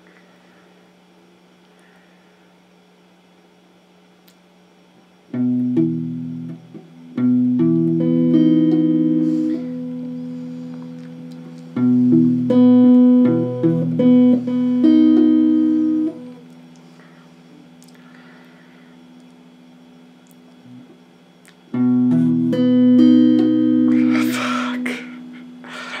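Electric guitar strummed slowly in chord practice: three runs of chords, each chord left ringing for a second or two, with pauses between the runs. A short noisy burst comes near the end.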